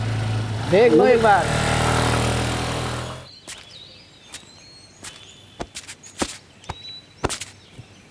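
A motor scooter's small engine running with a steady low hum and a rising rush of road noise, with a brief man's voice over it. It cuts off abruptly about three seconds in. Then comes quieter open-air ambience with scattered light clicks and faint high bird chirps.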